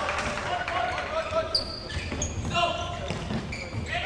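Raised voices echoing in an indoor sports hall, mixed with the dull thuds of a futsal ball being kicked and bouncing on the wooden court.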